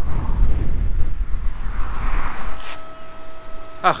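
Heavy, low road and wind rumble from a Hyundai Ioniq electric car driving on the motorway. About two-thirds of the way in it gives way to a steady high hum at the fast-charging station.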